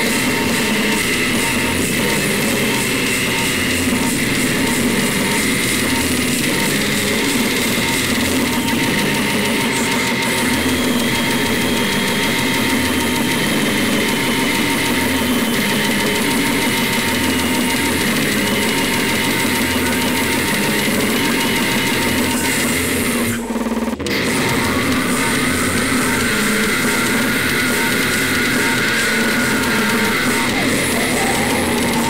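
Slamming brutal death metal: dense distorted guitars and drums played continuously, with a brief break a little past two-thirds of the way through.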